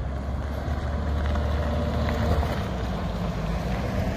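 1986 MCI 102-A3 coach's Detroit Diesel two-stroke engine running steadily with a deep low rumble as the bus drives past close by, getting slightly louder toward the end.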